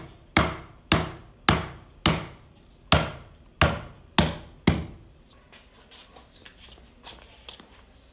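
Wood-on-wood knocks: a wooden block struck down onto the end grain of a log table leg, driving the log rail joints home. Eight loud, sharp blows at an uneven pace of about two a second, stopping about five seconds in, with only faint small knocks after.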